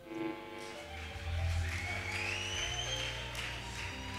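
Live church band music: a held chord with low bass notes coming in about a second in.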